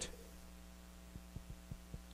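Faint, steady electrical mains hum with evenly spaced overtones, with a few soft faint taps a little past halfway.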